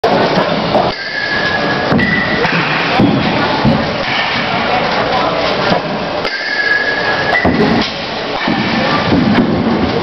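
Busy indoor batting-cage din: indistinct voices and clatter echoing in a large hall, with scattered sharp knocks and a short high steady tone about a second in and again about six seconds in.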